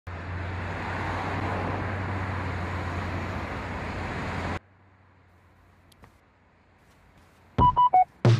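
Road noise of a car driving past on a street: a steady hiss with a low hum that cuts off suddenly after about four and a half seconds. Then near-quiet room tone, until near the end loud thumps and short pitched tones start the music.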